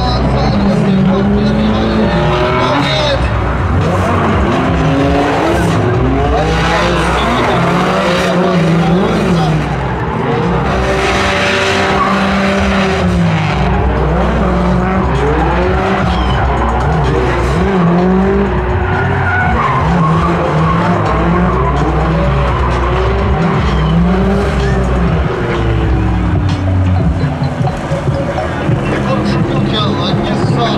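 Drift cars' engines revving up and down over and over as the cars slide sideways, with tyre squeal, loudest about halfway through.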